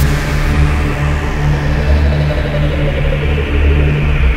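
Electronic music made entirely on synthesizers: a deep, pulsing bass drone with steady low tones underneath, a bright hiss that falls away in the first second, and a middle tone that swells upward and sinks back in the second half.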